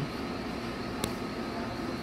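Steady background hum with a single sharp click about a second in.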